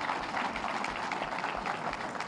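Audience applauding: a dense, steady patter of many hands clapping, dying down shortly after the end.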